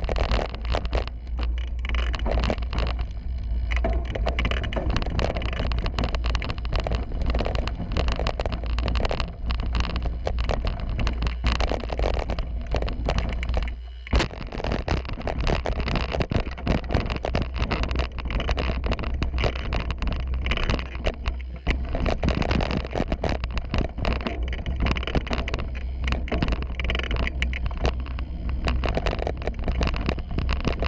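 YT Capra 27.5 mountain bike riding fast down a dirt trail, heard from a bike-mounted GoPro: wind rumbling on the microphone over tyre noise and constant rattling of the bike over rough ground. A short lull about fourteen seconds in ends in a sharp knock.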